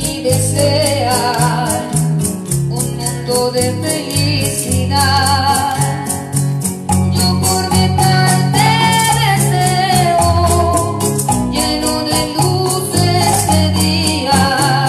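A woman singing a ballad into a microphone to Yamaha electronic keyboard accompaniment. A steady maraca-like rhythm beat runs under the voice.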